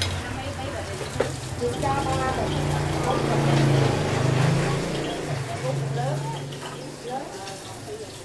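Stall-side background of voices over a low, steady hum that swells about three to four seconds in, with a faint hiss of bánh khọt batter frying in small multi-cup pans on kerosene stoves.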